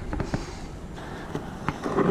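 Low rumble of wind and handling noise on a camera carried by a running person, with faint scattered footfalls of runners on grass.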